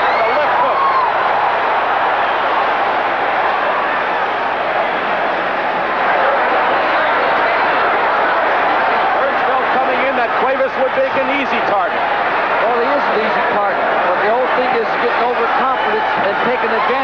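Arena crowd's steady din of many voices shouting and cheering at a live boxing match.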